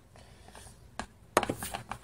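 Light clicks and taps of hands and a mixing utensil against a clear plastic bowl: a quiet start, a click about a second in, a sharper one just after, then a few small ticks.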